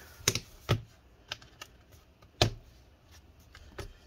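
Clicks and knocks of an HP 14-dq1033cl laptop being handled: it is turned over, set down and its lid opened. There are about six separate knocks, the loudest about two and a half seconds in.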